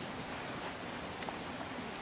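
Quiet steady background hiss with a single faint click a little past halfway.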